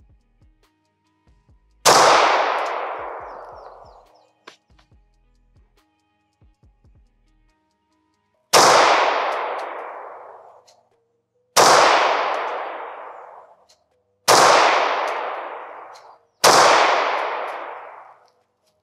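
Five pistol shots from a 9mm PSA Dagger. The first comes alone and the other four follow about every two to three seconds. Each shot is loud, with a long ringing decay.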